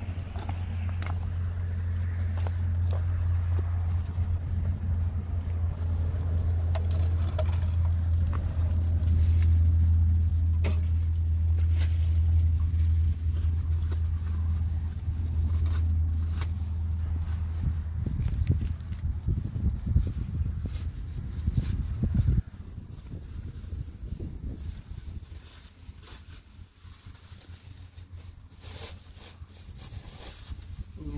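A steady low rumble that cuts off suddenly about three-quarters of the way through, with plastic bags crinkling and rustling as they are handled.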